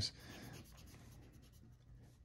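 Faint pencil strokes scratching on drawing paper.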